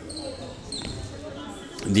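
Basketball court sounds during a free-throw stoppage: a basketball bouncing once on the hardwood floor a little before the middle, under faint voices in the hall.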